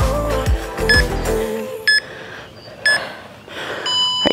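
Backing music with a steady beat that stops about one and a half seconds in. It is followed by electronic interval-timer beeps about a second apart, two short ones and a third starting near the end, marking the end of a work interval and the start of a rest.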